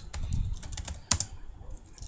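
Computer keyboard typing: a short run of keystroke clicks, with one louder click about a second in.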